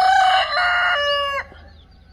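A rooster crowing: one long crow that holds steady, drops in pitch at the end and breaks off about a second and a half in.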